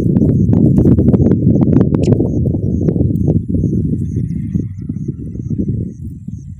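Loud, dense low rustling and buffeting close to the microphone, with many sharp clicks and knocks, easing off after about three seconds. Faint, thin high peeps repeat about three times a second over it.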